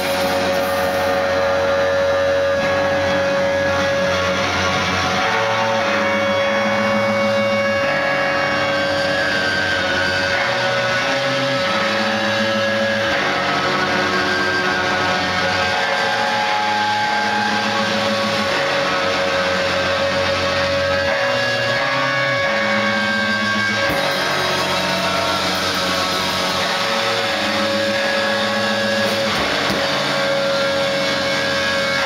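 Noise-rock band playing live at loud, steady volume: a dense wall of distorted guitar with one steady high tone held over it and low notes shifting underneath.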